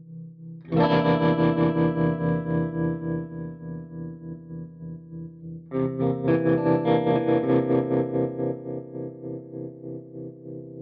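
Overdriven electric guitar played through the Spaceman Voyager I optical tremolo pedal: a chord struck about a second in and another about six seconds in, each ringing out with a rapid, even pulsing in volume from the tremolo.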